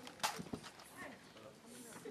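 Two sharp clacks about a quarter and half a second in, from rifles being slapped and moved in a police rifle drill, then a low murmur of the gathering.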